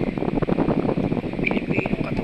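Wind buffeting a phone's microphone: a steady, rough, fluttering rumble.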